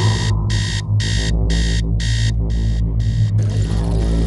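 Digital bedside alarm clock beeping in an even run of high-pitched beeps, about two a second, which stops about three seconds in. A steady low drone runs underneath.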